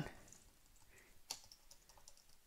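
Faint computer keyboard typing: a few soft keystrokes, one a little louder past halfway.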